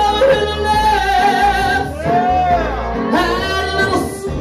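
A performer singing live into a hand-held microphone over a backing track, in long held notes with vibrato and sliding pitch.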